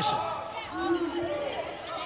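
Basketball bouncing on a hardwood court during play, with voices in the arena behind it.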